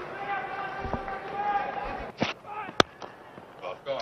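Stadium crowd murmur, then a single sharp crack of a cricket bat striking the ball about three-quarters of the way through.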